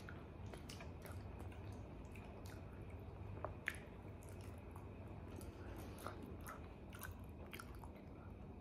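Faint chewing of a soft, chewy Turkish sweet filled with macadamia nuts, over a low room hum, with a couple of small sharper clicks about three and a half seconds in.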